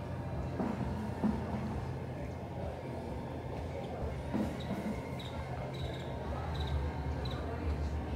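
Indistinct voices over a steady low rumble, with a string of about five short, high chirps in the second half.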